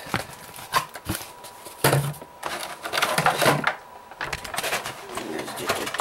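Plastic blister tray and cardboard box being handled, with rustling and a few sharp clicks. A person's low murmur comes twice, about two and three seconds in.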